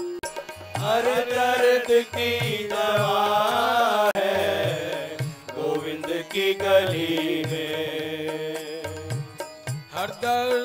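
Live Hindi devotional bhajan: male voices singing a melodic line over sustained harmonium chords, coming in about a second in, with low drum strokes keeping a steady rhythm.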